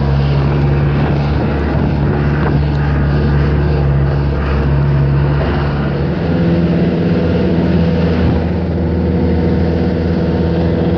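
Vehicle engine droning steadily, with road and wind noise, from inside a moving vehicle; the engine note shifts higher about six seconds in.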